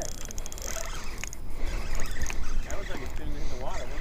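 Wind rumbling on the microphone, with light mechanical clicking and faint distant talk.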